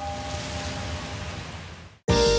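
A rushing hiss, a whoosh-like sound effect, with the last ringing tones of the ambient logo music fading beneath it; it dies away to near silence at the very end.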